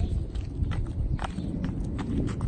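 Sandalled feet hopping and landing on asphalt in a hopscotch game: several quick, separate footfalls over two seconds.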